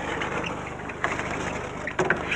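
Chalk scratching on a blackboard as a line is written, with a few faint taps, over a steady low hum on the recording.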